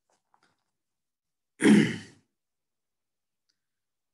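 A short, breathy sigh from a man about one and a half seconds in, against otherwise near silence.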